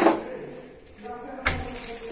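Papaiz Massima door lever handle being pulled off its spindle: two sharp clicks about a second and a half apart, the first with a brief ringing tail.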